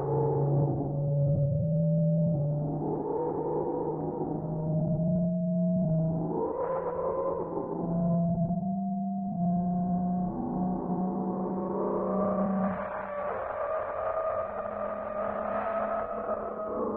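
Dark drone sample from a sound-design library: a held low tone that shifts pitch now and then, under layered higher tones that swell and fade in slow waves. The drone grows brighter and fuller about three-quarters of the way in and keeps evolving.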